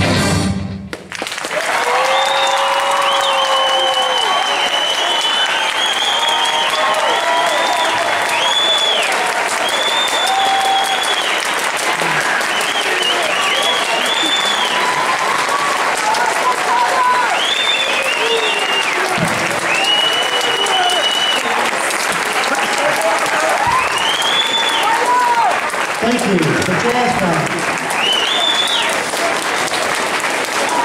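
A jazz big band's final chord cuts off about a second in. An audience then applauds and cheers, with repeated high whistles over the clapping.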